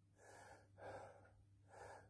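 Three short, faint breaths from a man ill with coronavirus.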